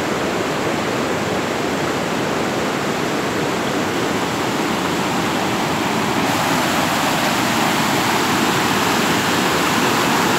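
Creek in flood, a steady loud rush of fast-moving water pouring over a submerged road.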